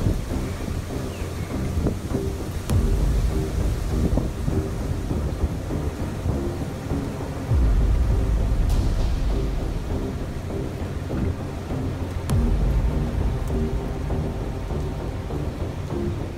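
Thunderstorm with a deep, continuous rumble that swells about halfway through and again a few seconds later, with faint background music over it.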